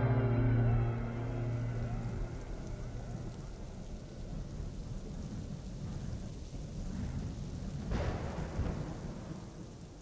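Music dies away over the first two seconds, leaving a rain-and-thunder ambience: a steady hiss of rain with low rumbling and a louder roll of thunder about eight seconds in. It fades down toward the end.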